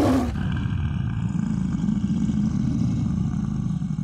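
Lion roar sound effect for an animated logo: a loud roar right at the start, followed by a long, deep rumble.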